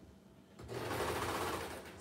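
Baby Lock Imagine serger running in one short burst of stitching, starting about half a second in and stopping just before the end, as it sews elastic onto stretchy T-shirt knit.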